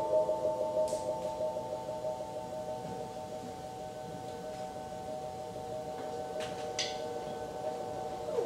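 Metal percussion ringing out: several steady tones fading slowly, with a few faint light taps about a second in and near the end.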